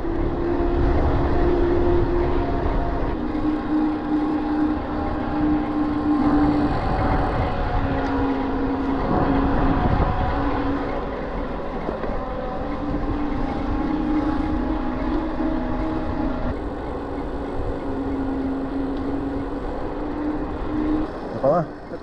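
Electric mountain bike riding on asphalt: the motor whines steadily, its pitch stepping up and down every few seconds as speed changes, over a heavy rumble of wind on the microphone and tyre noise.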